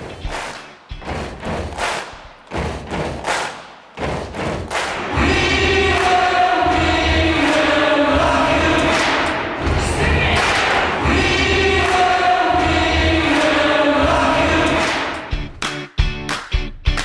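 A large crowd singing together in a sustained chorus over a regular low beat. It begins after a few seconds of scattered thumps and fades out near the end.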